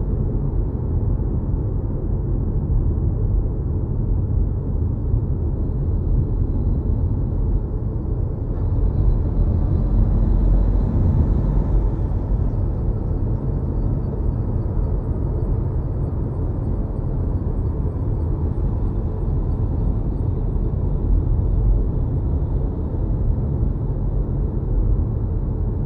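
Steady low road and tyre rumble inside an electric car's cabin while cruising, with no engine note, swelling slightly about ten seconds in.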